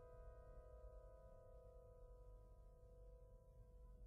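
A piano chord struck just before, left to ring out, its several notes sounding together and fading slowly and faintly with no new note played.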